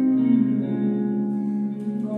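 Background music made of long held notes that change pitch about half a second in and again around a second and a half in.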